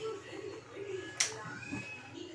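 Faint background voices, with one sharp click about a second in.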